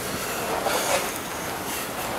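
Steady outdoor city street noise, a continuous rumble and hiss with a few louder swells.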